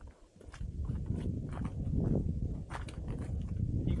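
Hikers' footsteps scuffing on sandstone, with scattered sharp clicks of trekking-pole tips on the rock. A low rumble on the microphone sets in about half a second in.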